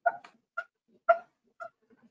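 A dog barking in short, sharp barks, about five in two seconds, the loudest about a second in.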